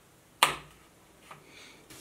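A drinking straw being pushed through the foil-covered hole of a small juice carton, giving one sharp pop about half a second in. Faint sipping sounds through the straw follow near the end.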